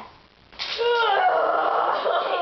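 A girl's high-pitched, whining squeal of laughter, starting about half a second in and held without a break.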